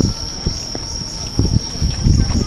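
Night insects chirring in one steady, high, unbroken tone, over the low bustle of people moving about, with scattered soft thumps.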